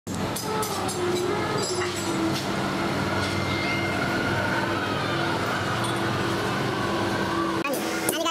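Steady mechanical drone with an even low hum, like a motor running, with a few sharp clicks in the first two seconds; it cuts off just before the end.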